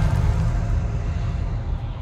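A deep, noisy rumble that fades steadily away.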